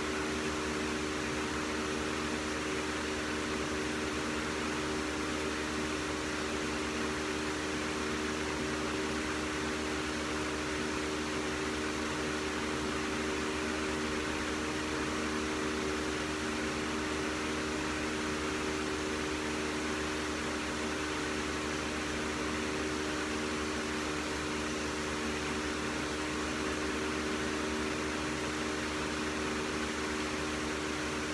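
Steady machine hum: a few fixed low tones under an even hiss, unchanging.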